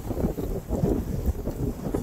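Strong wind of about 25 miles an hour buffeting the microphone: an uneven low rumble that rises and falls in gusts.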